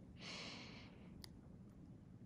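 A faint exhaled breath, a soft sigh lasting under a second just after the start, then near silence with one faint click.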